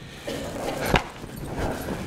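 Hooves of a young Thoroughbred horse on the dirt footing of a round pen as it canters and changes direction, with one sharp knock about a second in.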